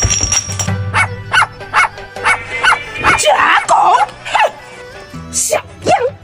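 A dog barking in a quick run of short barks, about two to three a second, over background music. The barks stop about four and a half seconds in.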